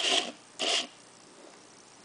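Two short scraping rubs about half a second apart, as a clear plastic container is handled.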